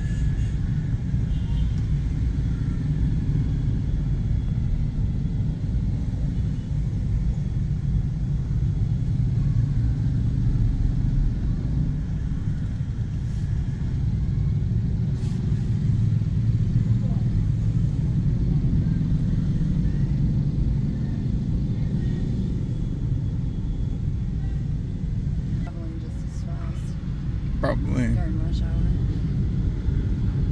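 Steady low rumble of a car's engine and surrounding road traffic, heard from inside the car's cabin, with a few brief sharper sounds near the end.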